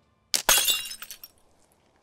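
Glass breaking: a sharp crack, then a burst of shattering with ringing, tinkling pieces that dies away within about a second.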